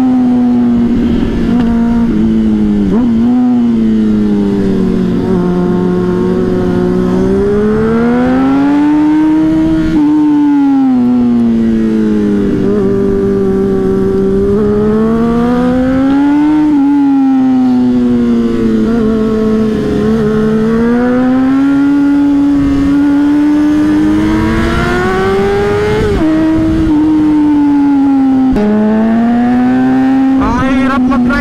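Honda CBR600RR inline-four engine heard from the rider's seat under hard riding. It climbs in pitch as it accelerates, drops sharply at each upshift, and sinks more slowly as the throttle closes, several times over, with a low rush of wind underneath.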